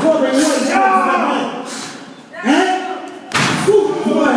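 A single heavy slam about three and a half seconds in, a wrestler's body hitting the mat or ring during the match, heard under ongoing commentary.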